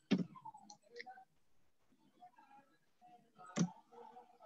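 Two sharp clicks, one right at the start and one about three and a half seconds in, with faint low sounds between.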